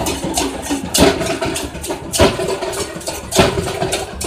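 Several large double-headed barrel drums and a big frame drum beaten with sticks in a fast, continuous rhythm, with heavy accented strikes about every second and a quarter.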